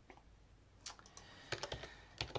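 Several faint keystrokes on a computer keyboard in the second half, typing a short command.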